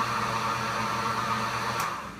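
Vitamix blender running steadily, blending coffee with butter and oil: a hum and a rushing whirr. Near the end it is switched off with a click and winds down.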